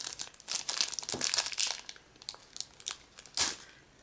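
Clear plastic crinkling and crackling as a trading card is worked out of its plastic holder: irregular crackles through the first two seconds, then quieter, with one sharp crackle about three and a half seconds in.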